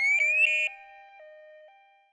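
Shrill electronic alarm of an Evacuaid emergency bracelet in emergency mode: a rising sweep that breaks into a quick warble and cuts off less than a second in. A quiet two-note background tone then alternates and fades away.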